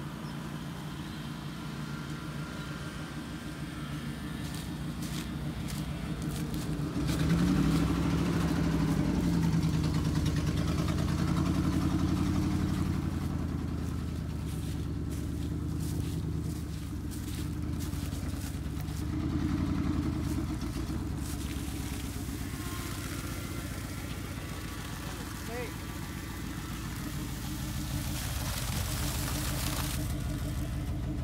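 A vehicle engine running steadily, speeding up about seven seconds in and holding higher revs for several seconds before settling back.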